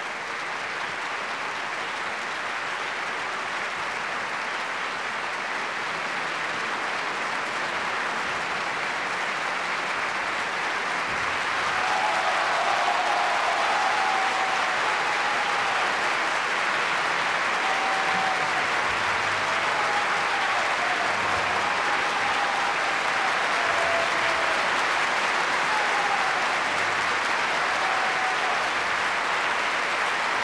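Large theatre audience applauding, swelling louder about twelve seconds in and holding there.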